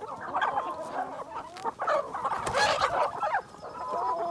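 A flock of chickens calling, with many short clucks and peeps overlapping one another.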